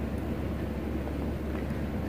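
Steady low room hum with faint background hiss and no distinct events.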